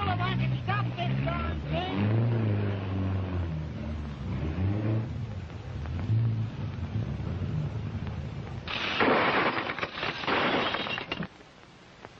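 Old film-soundtrack music with low notes that slide up and down. About nine seconds in, a loud crash of smashing and breaking lasts about two seconds and then stops abruptly.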